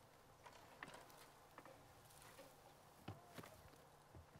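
Faint clicks and knocks as an RV's screen door is handled and someone steps up into the RV, over near silence; the clearest pair of knocks comes about three seconds in.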